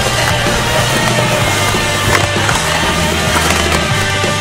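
A music track playing with a skateboard's wheels rolling on concrete in the mix.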